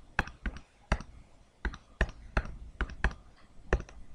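A run of sharp mouse clicks, about a dozen at an uneven pace, pressing the keys of an on-screen TI-83 Plus calculator emulator one at a time to enter a calculation.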